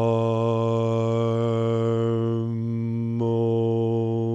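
A man's voice intoning a long chant on one steady low note, the vowel changing about two and a half and three seconds in.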